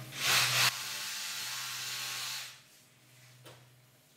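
A hissing spray that comes on with a louder burst, holds steady for about two seconds and then stops. A low hum stops under a second in.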